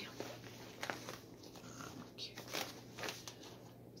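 Faint rustling and crinkling of paper and cloth being handled, with small scattered crackles.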